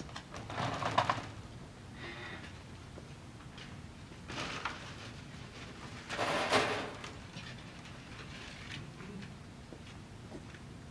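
Faint handling noises as lottery balls are loaded into a lottery machine: a few brief rustling clatters, the two loudest about four and a half and six and a half seconds in.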